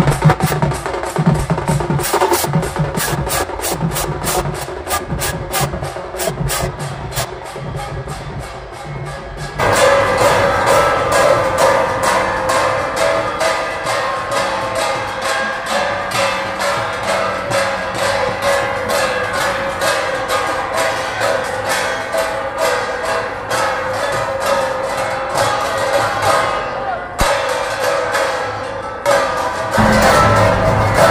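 A troupe of barrel drums beaten with sticks, playing a fast steady rhythm of about four strokes a second. About ten seconds in it cuts abruptly to louder, fuller music with a steady beat that runs on.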